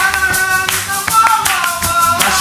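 Nylon-string acoustic guitar played with hand clapping in time and some singing along, an informal jam.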